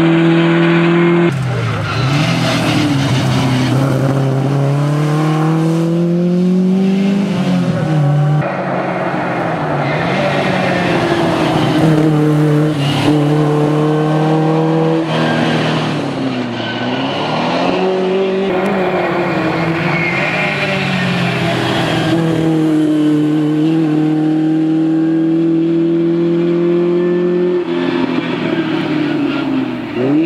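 Škoda 120S rally car's rear-mounted four-cylinder engine driven hard on a tarmac stage. Its note climbs through the revs and drops back on gear changes and lifts for bends, with long rises from about two to seven seconds in and again late on. The engine is the loudest thing throughout, and the sound cuts off right at the end.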